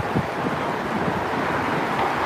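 Steady street noise outdoors: wind rushing on the microphone with traffic going by.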